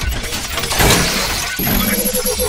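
News-channel logo intro sting: loud, dense sound-effect noise like crashing and breaking, with a rapidly pulsing tone starting near the end.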